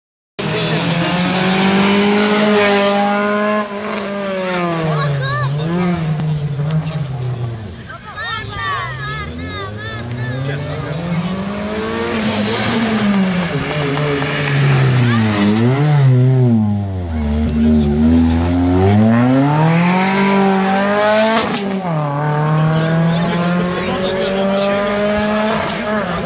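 Rally car engine revving up and down over and over as the car slides and spins on tarmac, with tyres squealing at times.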